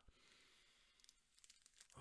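Near silence: a faint sniff at a chocolate bar held under the nose, with a few faint crinkles of its wrapper near the end.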